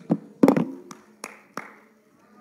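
About five sharp hand claps at uneven intervals, the one about half a second in the loudest.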